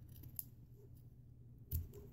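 Scissors snipping through a cotton knit glove: a faint snip under half a second in and a louder snip near the end.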